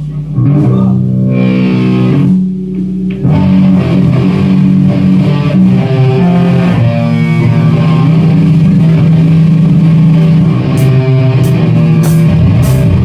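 Electric guitars and bass guitar of a stoner metal band playing a heavy riff of long held low notes. There is a short break about two seconds in, then the riff comes back in full and carries on steadily.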